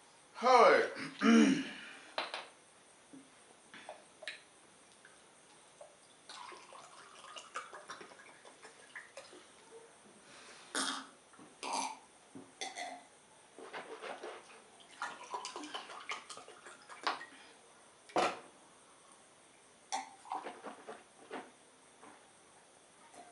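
Close-miked mouth and drinking sounds: two short voiced sounds with falling pitch about a second in, then scattered mouth clicks, smacks and swallows as water is sipped from a drinking glass.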